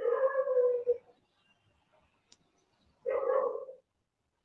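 A cat meowing twice: a drawn-out meow of about a second, then a shorter one about three seconds in.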